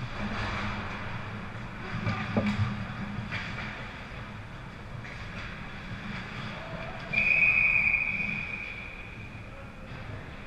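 Ice hockey referee's whistle blown once, a long steady blast about seven seconds in that stops play. Before it, skates on the ice and a few knocks of sticks and puck.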